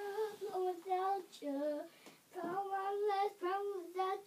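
A young girl singing alone without accompaniment: held, sustained notes in two phrases, with a short breath pause about halfway.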